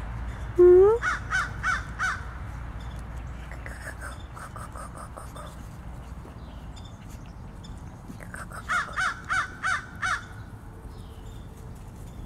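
A crow cawing in two quick series of short, harsh, evenly spaced caws, about four just after the start and about six near the end. A brief, louder rising call comes just before the first series.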